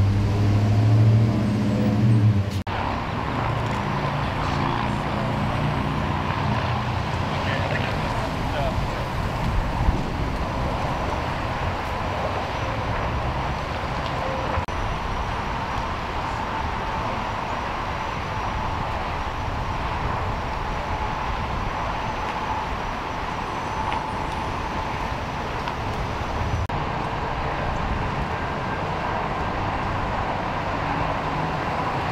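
Street traffic and idling vehicles: a low engine hum for the first two or three seconds that stops abruptly, then a steady traffic noise.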